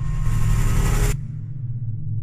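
A burst of rushing noise, about a second long, that cuts off abruptly, over a steady low hum.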